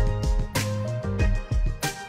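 Background music with drum hits and a bass line.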